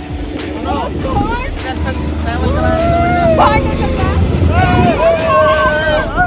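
Several people's voices laughing and calling out, with long drawn-out shouts in the second half, over a steady low rumble.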